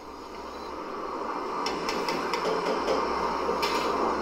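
Kitchen sounds heard through a television's speaker: a steady hiss that slowly grows louder, with a few light metal clinks of a ladle against a steel pot and serving dish, a couple near the middle and one near the end.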